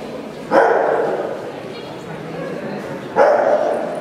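A dog barking twice, about two and a half seconds apart, each bark echoing in a large hall.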